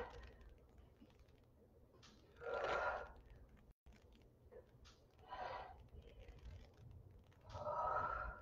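A woman breathing hard while doing weighted sumo squats: three short exhales about two and a half seconds apart, one per squat.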